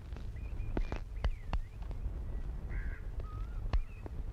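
Scattered short bird calls, chirps and a brief caw, with a few sharp clicks over a low steady hum from the old soundtrack.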